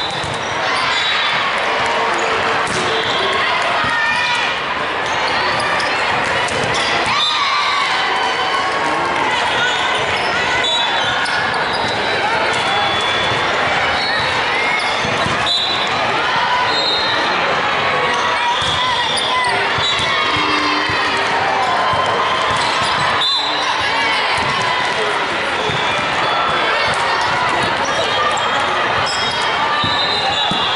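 Steady din of a busy indoor volleyball hall: many voices, balls being hit and bouncing on hardwood floors, and sneakers squeaking. Two sharp impacts stand out, about 7 and 23 seconds in.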